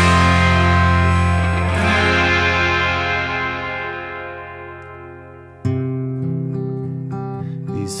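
Rock band music. A loud, distorted full-band chord rings out and slowly fades over about five seconds. Then, about two-thirds of the way in, a softer guitar part with bass starts abruptly and carries on.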